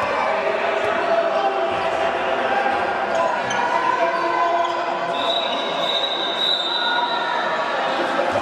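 Indoor handball game in an echoing sports hall: a ball bouncing on the court under a steady hubbub of players' and spectators' voices. About five seconds in, a steady high tone joins and holds to the end.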